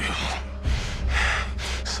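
Heavy, ragged breathing: a few loud breaths in and out between lines of dialogue, over a low steady drone.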